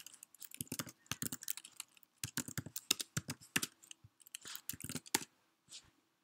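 Computer keyboard being typed on: a run of quick, irregularly spaced key clicks as short terminal commands are entered.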